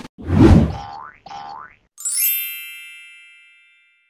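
Logo-animation sound effects: a low whooshing thump, two short upward-sliding tones, then a bright chime about halfway through that rings and fades away over nearly two seconds.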